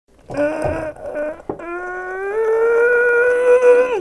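A man singing without words: a couple of short notes, then a long note that slides up in pitch and is held for over two seconds.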